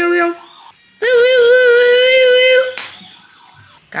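A voice holding long sung or cooed notes without words. There is a short note at the start and a longer, slightly wavering one from about a second in that lasts nearly two seconds.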